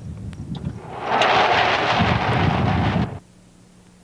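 Motor-driven rotary drum made from a plastic barrel starting up: a low rumble builds, a loud rushing noise joins it about a second in, and both stop abruptly about three seconds in.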